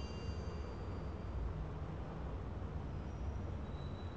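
Steady low rumble of traffic-like background ambience. The high ringing tail of a chime fades out in the first second or so.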